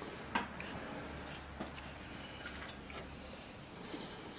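Small clicks and taps from handling a heat press's replacement circuit board and its wire connectors, the sharpest about a third of a second in and a few fainter ones after, over quiet room tone with a faint low hum midway.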